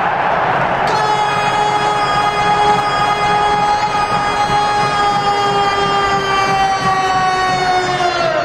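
Ice hockey arena goal horn sounding one long, loud held note over crowd noise, its pitch sagging slightly as it goes.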